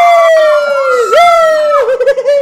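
A man's high falsetto voice imitating a police siren: two wails, each jumping up quickly and then sliding slowly down, the second ending in a quick wobble.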